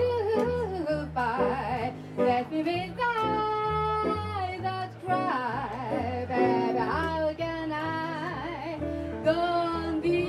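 Live jazz trio: a woman sings held, vibrato-laden phrases, accompanied by an archtop electric guitar and an upright double bass stepping through notes about twice a second.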